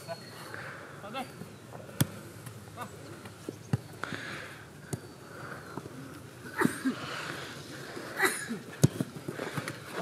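Football being kicked on an artificial-turf pitch: a few sharp thuds of boot on ball, about two seconds in, near four seconds and near nine seconds, with faint distant shouts from players between them.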